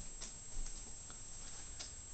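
Faint footsteps across a carpeted floor: a few soft low thuds with light clicks between them.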